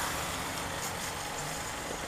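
Motorcycle riding slowly in traffic: a steady hiss of wind and road noise on the rider's microphone, with the bike's engine running low underneath.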